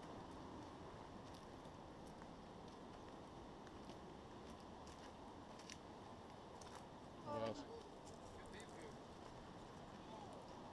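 Quiet trail ambience with faint, scattered footsteps on dirt and stone, and one short vocal sound a little over seven seconds in.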